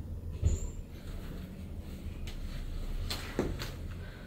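A sharp thump about half a second in, then a few light knocks and creaks, as a person standing on a patient's lower back on a padded treatment table shifts her weight. A low steady hum runs underneath.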